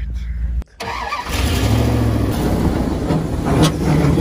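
A pickup truck engine running, heard under a rough, even wash of noise, with one short sharp tick about three and a half seconds in.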